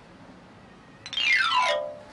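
A falling sound effect, about a second in: one pitched electronic tone gliding steeply down in pitch for just under a second, then fading.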